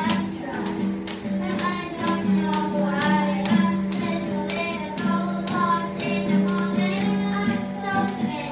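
A girl singing while strumming chords on an acoustic guitar, with a steady, even strumming rhythm under the sung melody.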